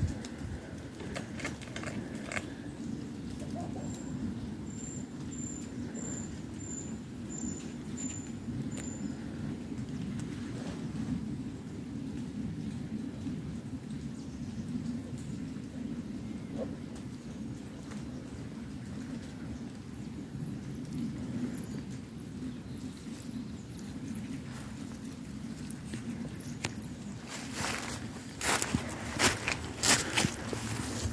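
Quiet outdoor background with a steady low rumble. Between about four and nine seconds a small bird calls a run of about seven short, very high notes. Near the end come hurried footsteps through grass and leaf litter, with rustling and knocks.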